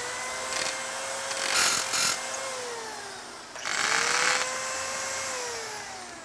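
Electric drill pre-drilling holes through an aluminum mull clip into masonry. The drill runs twice: its whine holds steady, winds down a little past two seconds in, winds up again, and winds down near the end. Short bursts of grinding come in as the bit bites.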